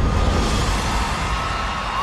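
Studio audience cheering over music after a golden buzzer has been hit.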